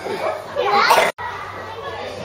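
Children's excited voices and chatter from onlookers, with a rising squeal a little before halfway; the sound cuts off abruptly just past halfway, then lower background chatter follows.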